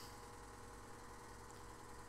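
Near silence: a faint steady background hum of the recording's room tone, with no other sound.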